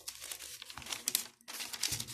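Paper rustling and crinkling as spiral-notebook pages are handled, in two stretches with a brief pause about one and a half seconds in.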